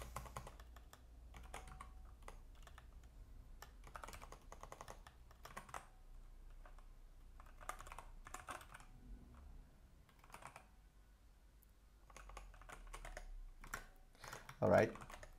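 Faint typing on a computer keyboard: runs of quick keystrokes broken by short pauses.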